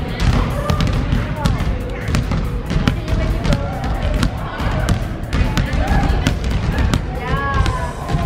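Basketballs bouncing on a hardwood gym floor: irregular thuds from several balls being dribbled, with children's voices calling out indistinctly in the hall.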